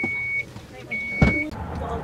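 Two steady, high electronic beeps inside a car, each lasting about half a second and about a second apart, typical of a car's warning chime. A sharp thump lands during the second beep, over the low hum of the cabin.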